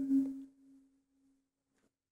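A man's chanted Quran recitation ending on a held note: the note fades out in the first half second, leaving one faint steady tone that dies away, then near silence.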